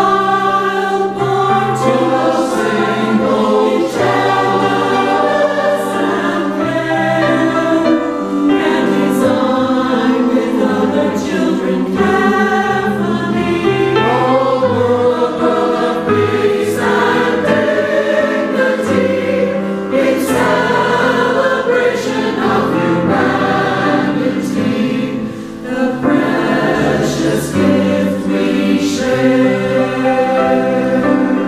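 Mixed choir of men and women singing in parts, with many voices holding overlapping pitches that move from phrase to phrase.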